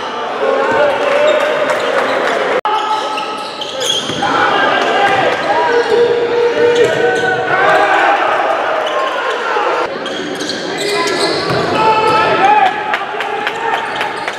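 A basketball being dribbled on a hardwood gym floor, each bounce a sharp knock that echoes in a large hall. Indistinct voices of players and spectators run underneath throughout.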